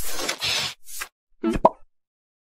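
Distorted, effects-processed logo sound effect: a wet splat lasting under a second, then a brief blip and a couple of short pitched chirps.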